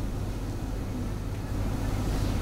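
A steady low rumble that grows a little louder near the end.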